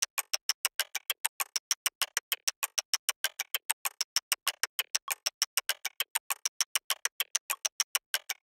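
A sampled percussion loop of chopstick clicks, about seven short, dry clicks a second. It plays through Ableton's Simpler while an LFO with jitter sweeps the detune, so its speed and pitch drift slightly for a looser, less rigid groove.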